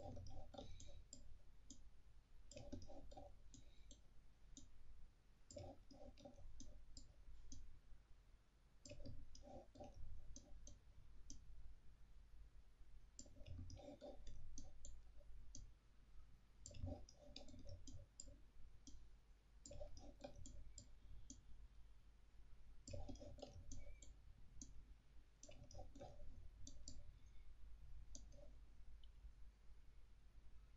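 Computer mouse clicking faintly, in short clusters of several clicks about every three seconds.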